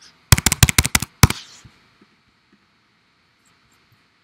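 Computer keyboard keys clicking in a fast run of about nine strokes in under a second, then one more: a key pressed repeatedly to delete a word of typed text.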